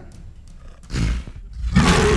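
Animal roar sound effect marking a logo transition: a short rough growl about a second in, then a loud roar starting in the last half second.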